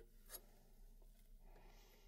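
Faint handling sounds of a server CPU being set into its socket: a short click about a third of a second in, a light tick a moment later, then a soft scrape near the end, over a low steady hum.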